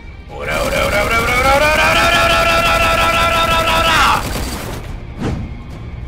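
A long drawn-out battle yell, rising in pitch and then held steady for a couple of seconds before cutting off, over background music.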